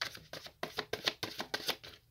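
Tarot deck being shuffled by hand: a quick run of short card strokes, several a second.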